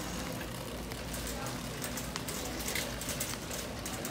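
Busy shop background: indistinct voices with shuffling footsteps and small clicks and rattles, over a steady hiss.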